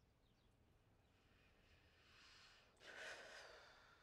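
Faint breathing, heard as a sigh: a soft breath in that builds from about a second in, then a stronger breath out near the end that fades away.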